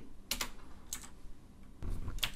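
Computer keyboard typing: a few separate keystrokes, spaced apart.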